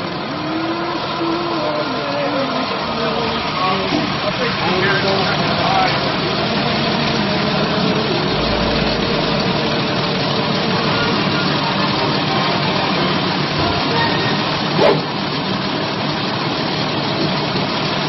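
A large vehicle engine idling steadily close by. Voices are heard faintly over it in the first few seconds, and there is one sharp click near the end.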